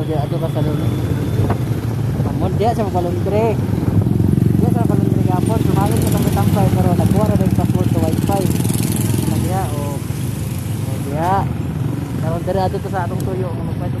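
Small motorcycle engine running steadily while riding along a street, getting louder for a few seconds in the middle. Voices talk over it throughout.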